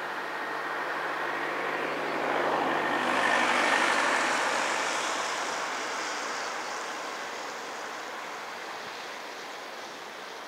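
A road vehicle passing: its noise swells to a peak three to four seconds in and then slowly fades, over a steady rushing background.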